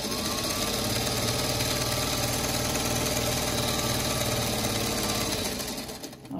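Vintage Singer Featherweight electric sewing machine running steadily, stitching a straight seam through two layers of quilting cotton, then stopping shortly before the end.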